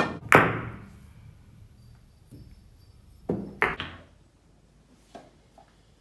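Pool cue striking the cue ball, then a sharp clack of ball on ball about a third of a second later that rings out briefly. Two more knocks of balls against the cushions or pocket about three and a half seconds in.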